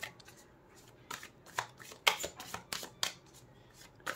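A deck of tarot cards being shuffled by hand, cards slid from one hand to the other. After a quiet first second come irregular soft flicks and slaps of the cards.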